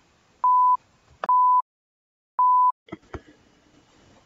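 Three steady, single-pitched electronic beeps, each about a third of a second long and unevenly spaced, followed by a couple of faint clicks near the end.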